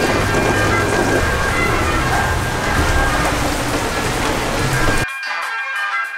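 Heavy rain pouring down in a steady downpour, with background music under it. About five seconds in, the rain cuts off suddenly and only the music remains.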